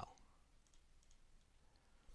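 Near silence: a pause in the recording with a few faint clicks.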